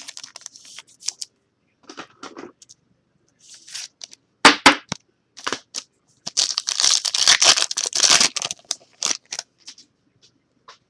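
Trading card pack wrapper being torn open and crinkled as cards are handled, with scattered short rustles. Two sharp snaps come about four and a half seconds in, and a longer stretch of crinkling tearing follows in the second half.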